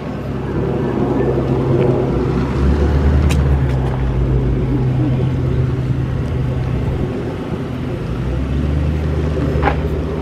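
Mercedes-Benz R300's V6 engine idling steadily, a low even hum that swells and fades slightly, with a few brief clicks.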